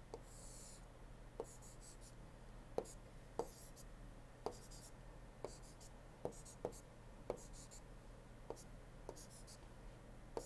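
Stylus writing on a drawing tablet: about a dozen faint taps at irregular intervals, with short scratchy strokes between them as the pen moves.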